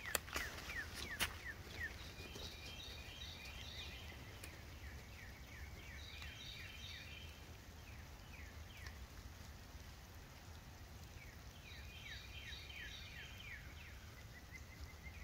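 A songbird singing: three runs of quick, falling notes, a few seconds apart. There are a couple of sharp clicks in the first second or so, over a faint low hum.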